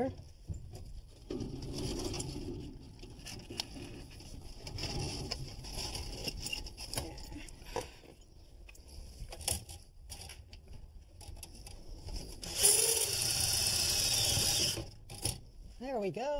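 Scraping and clicking of flexible aluminium vent liners being worked onto a gas fireplace insert's exhaust and intake collars. A louder steady rushing noise lasts about two seconds near the end.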